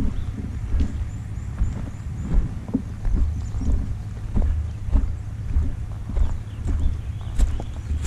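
Footsteps of a person walking on a dirt and leaf-litter trail, a dull thud roughly every half second, under a steady low rumble of wind on the microphone.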